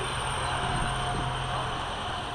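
SA133 diesel railbus (SA133-020) moving slowly while shunting, its engine running with a steady low drone and a fainter steady whine above it.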